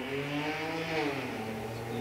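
Faint low droning hum with a pitch that rises and then falls gently over about two seconds.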